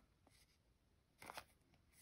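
Near silence, broken a little past a second in by one faint, brief rustle of trading cards being slid across each other in the hand.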